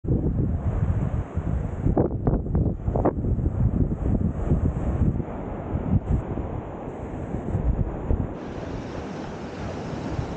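Wind buffeting the camera's microphones in heavy gusts, with ocean surf washing on a sandy shore underneath. About eight seconds in the buffeting eases, leaving a steadier wash of surf.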